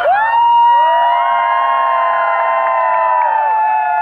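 Long held musical tones, joined about a second in by a crowd's drawn-out cheer that fades out after about three and a half seconds.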